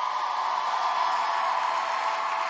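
Audience applauding and cheering at the end of a song, a steady loud wash of clapping and shouting.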